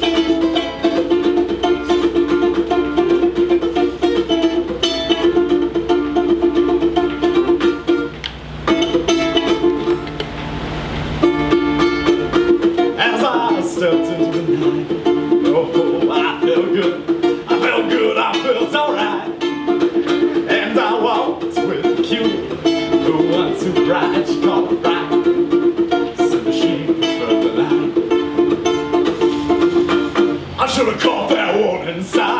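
Ukulele strummed in a steady rhythm as the instrumental opening of a song, with a short break a little past eight seconds in.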